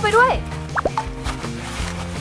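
Light background music with a short bubbly 'plop' sound effect just under a second in: a quick upward pitch sweep followed by a brief falling blip.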